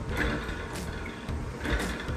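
Hand-cranked honey extractor spinning honey frames: the crank gears and drum whir steadily, swelling slightly about once a second with each turn of the handle.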